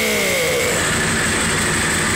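Several Ducati sport motorcycle engines running at idle inside a room, a steady, loud mechanical noise.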